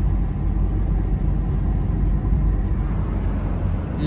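Steady low rumble of a car being driven, heard from inside the cabin.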